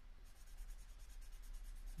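Black Uni Pin fineliner pen scribbling back and forth on a paper record card, colouring in a solid dark area: a faint, steady scratching.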